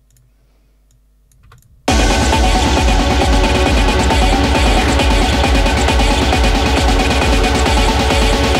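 A few faint clicks, then about two seconds in a techno track starts playing back abruptly and loud, with a driving kick drum under dense electronic layers. It is the remix being played from the production software to check the kick level that has just been raised in this section.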